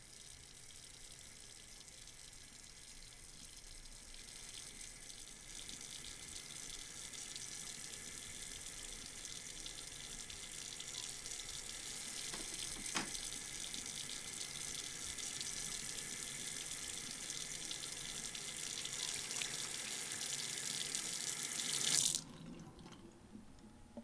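Bathroom sink tap running, a steady hiss of water that grows louder over the first several seconds, with a single sharp click about halfway through. It swells briefly and cuts off suddenly at the end.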